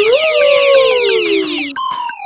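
Cartoon pouring sound effect: a fast, shimmering run of repeated falling high sweeps that stops shortly before the end. Under it runs a smooth gliding tone that rises at the start and then slowly sinks.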